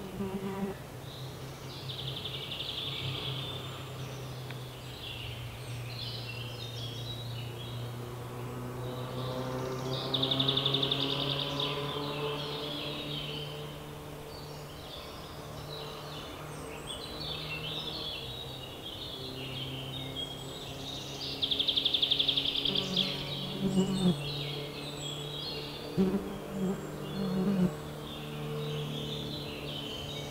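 Forest songbirds singing, with several rapid high trills, over the low drone of a flying insect buzzing close by. The buzz shifts in pitch and comes in short louder spurts near the end.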